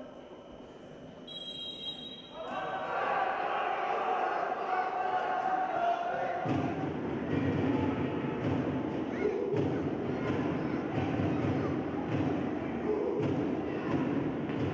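A referee's whistle blows once for about a second, followed by players shouting and repeated thuds of the ball being kicked, echoing in an indoor football hall.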